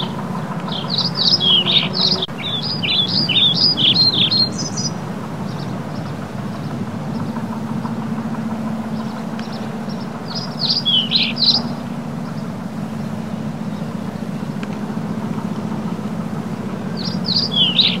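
Small birds chirping in quick high-pitched bursts, three times, over a steady low hum.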